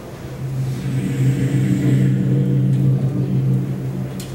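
A brass horn, trumpet or flugelhorn, playing one very low held note that swells in about half a second in, holds for about three seconds and fades near the end.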